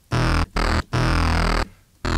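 A sampled sound played three times in quick succession from Logic Pro X's Sampler, with note velocity modulating the sample start point. Each note starts abruptly and stops short, and the third is held about twice as long as the first two.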